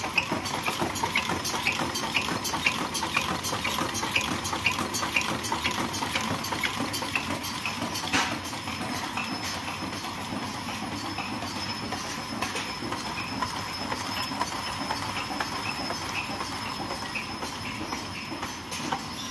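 Four-corner-box automatic folder gluer running, with a fast, even clacking over a steady hum.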